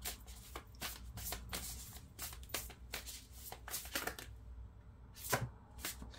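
A deck of cards being shuffled by hand: short flicks of cards, about four a second, stopping about four seconds in, then one louder slap near the end.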